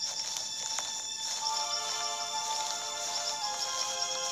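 Background music of sustained held notes, with more notes joining about a second and a half in to form a held chord.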